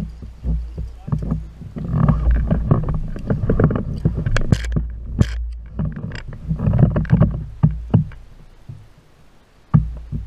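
Handling noise on a kayak: irregular knocks and rumbling against the hull, with short sharp clicks that cluster a little past the middle. The sound fades in the last couple of seconds, broken by one sharp knock near the end.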